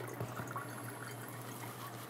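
Faint, steady trickle of wash liquid being poured from a jar of plant sample through a coffee-filter funnel into a glass flask, straining out thrips.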